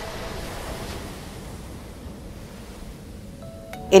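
Sea water rushing and splashing around a remotely operated vehicle as it is lowered into the ocean, a steady wash that slowly fades.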